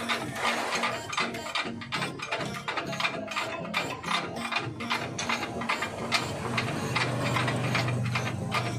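Ratchet wrench clicking rapidly and unevenly as bolts on a van's front suspension are turned by hand.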